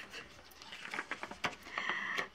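Quiet handling of paper: soft rustling and a few light taps as the pages of a cross-stitch chart book are searched through.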